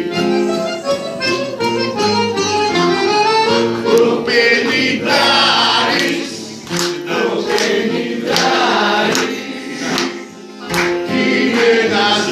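Live Greek laïko song: voices singing over a small band's accompaniment of sustained instrumental notes, with sharp strikes here and there.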